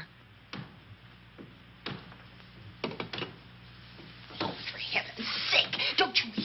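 A handful of irregular knocks, about a second apart, the awful noise coming from the floor above, over a low steady hum. A woman starts speaking near the end.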